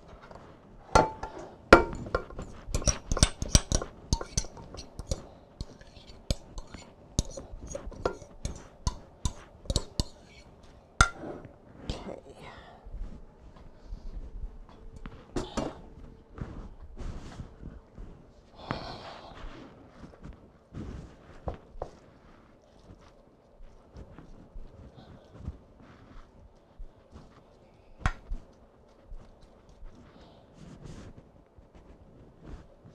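A metal spoon clinking and scraping against a ceramic mixing bowl and a glass baking dish as a casserole mixture is scraped out and spread: a quick run of taps for the first ten seconds or so, then scattered single clinks.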